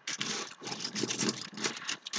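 Metal dog tags and their ball chains being handled and dragged over a wooden tabletop: a continuous run of irregular rattling and scraping.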